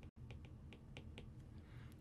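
Faint light ticks of a stylus tip tapping a tablet's glass screen while a word is handwritten, several scattered clicks over low room tone.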